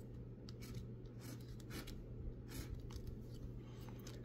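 A plastic scratcher tool scraping the coating off a scratch-off lottery ticket in a series of short, faint strokes, over a steady low hum.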